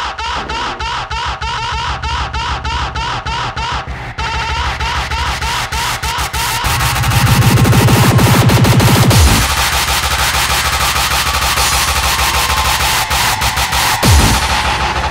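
Hardcore electronic dance track: short rhythmic synth stabs, about four a second, give way around four seconds in to a faster, denser build. A loud low bass swells in near seven seconds and cuts off suddenly about two seconds later, before the full beat carries on.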